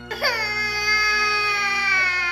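A toddler starts crying: one long, high wail that begins a moment in and slowly drops in pitch.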